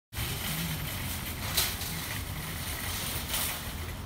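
Outdoor background noise: a steady low rumble and hiss, with two brief louder swells about one and a half and three and a half seconds in.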